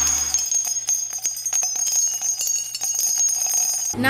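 Logo-intro sound effect: rapid tinkling, chime-like strikes over a steady high ringing tone.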